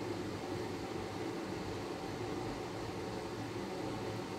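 Room tone: a steady low hum and hiss with nothing else happening.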